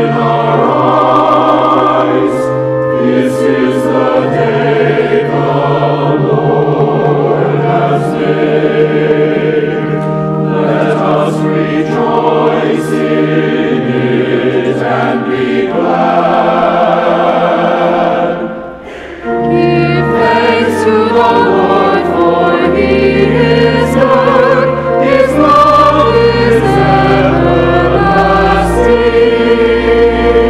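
Church choir of mixed men's and women's voices singing a sacred piece. There is a brief break about two-thirds through, after which the singing resumes over deep sustained bass notes.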